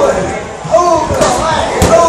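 Knee strikes landing on Thai pads with sharp slaps, the loudest near the end, each with a short shouted vocal call typical of Muay Thai pad work.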